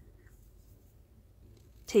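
Near silence: room tone with faint rustling of cotton yarn being worked on a crochet hook. A woman's voice starts right at the end.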